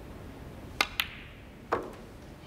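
Snooker shot: a sharp click of the cue tip on the cue ball, a second click a fifth of a second later as the cue ball strikes the pink, then a duller knock as the pink drops into a pocket.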